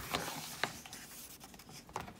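A page of a picture book being turned by hand: paper rustling and sliding, with a few short ticks.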